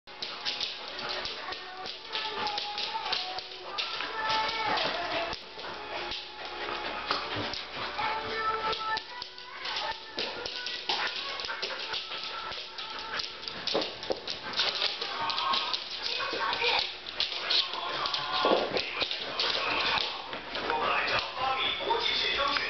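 Two Samoyeds vocalising and play-growling as they tug on a rope toy.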